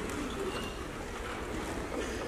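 Steady concert-hall room noise from a seated audience, an even hiss with no instruments playing.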